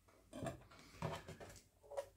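A few faint knocks and clinks: a knife edge pressed quickly down onto a BESS edge-sharpness tester, too fast, the way that gives false high readings, and the plastic tester being handled.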